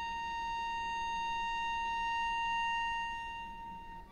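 Solo cello bowing one long sustained high note, which swells gently and then fades near the end. A new, higher note begins just as it dies away.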